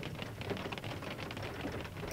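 A faint, steady scatter of small irregular ticks over a soft hiss, heard in the car cabin, like light rain on the roof.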